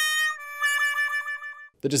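The comic 'sad trombone' figure, a brassy wah-wah in descending steps. Its last note is held long with a wobble and then stops, the stock sound of a letdown.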